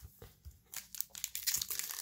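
Foil Core 2020 booster pack wrapper crinkling and tearing as hands work it open. Faint crackles start under a second in and grow busier toward the end.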